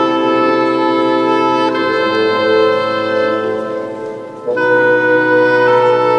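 Bassoon playing slow, held notes that change pitch a few times, with a brief drop in loudness just before a new note about four and a half seconds in.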